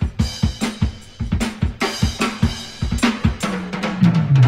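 Drum break in a recorded pop song: a drum kit playing alone, with kick, snare and cymbals in a busy steady pattern and no bass or voice.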